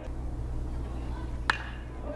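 Baseball bat striking a pitched ball for a line drive: one sharp hit with a short ring about one and a half seconds in, over a steady low hum.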